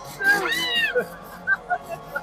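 A short high-pitched vocal cry that rises and falls, about half a second in, followed by a few brief squeaky vocal sounds, amid the screams and shrieks of a haunted-attraction scare.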